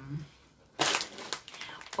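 Crinkling of a plastic snack bag of Oishi Spicy Seafood Curls being picked up and handled, starting a little under a second in as a dense crackle.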